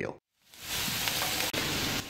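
Boneless beef short ribs sizzling in hot oil in a roasting tray as they brown: a steady hiss that starts abruptly about half a second in.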